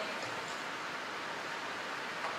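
Steady faint hiss of room tone through the pulpit microphone, with no distinct event.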